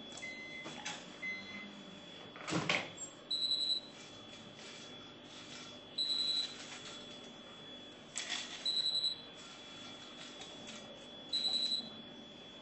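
Microwave oven door clicking open, with its beeper giving four short high beeps a couple of seconds apart, and a second click later.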